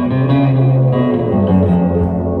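Electric guitar and upright double bass playing improvised music, a slow line of long held notes that change every half second or so.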